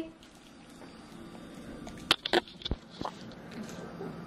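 A pug mouthing a liver treat on a tile floor: a few short, sharp clicks and taps about two seconds in, then faint small movement sounds.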